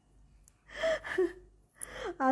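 A woman's short, breathy gasp about a second in, followed by a brief voiced sound, and a small click near the end.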